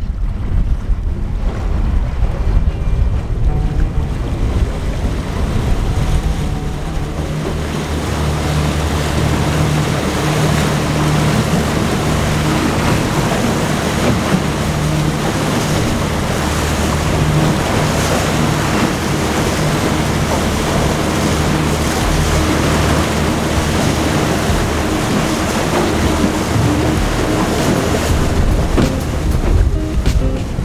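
Boat outboard motor running underway across choppy sea, with a steady rush of wind on the microphone and water splashing at the hull. A steady low engine hum comes up about seven seconds in and eases off near the end.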